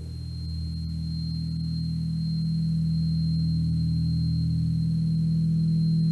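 Background music: a low sustained drone of a few held tones, slowly swelling in loudness, with no beat.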